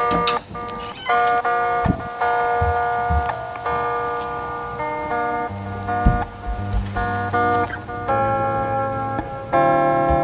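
Background music: a song with held notes and chords that change about every second.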